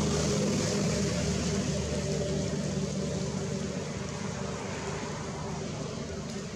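A motor running steadily, a low hum under a wash of noise, easing off a little toward the end.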